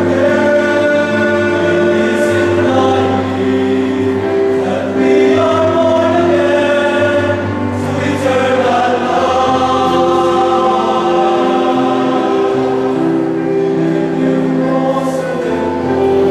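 Male choir singing in several parts, holding long chords that shift from one to the next.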